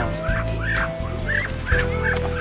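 Farmyard fowl calling in a quick run of short, repeated calls, about three or four a second, over a steady held tone.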